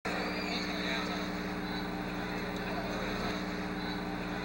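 Steady electrical hum with a constant hiss, typical of an old film or tape recording, with a faint murmur of voices beneath.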